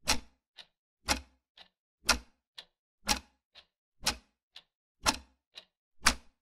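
Clock-ticking sound effect keeping time with a countdown: a strong tick once a second, each followed about half a second later by a lighter tock.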